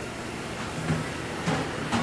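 A few light knocks of a steel cleaver against an end-grain wooden chopping block as a tomato wedge is cut, over a steady background hum.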